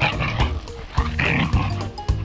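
Huskies vocalizing in rough play, heard twice: once at the start and again about a second and a quarter in, over background music with a steady beat.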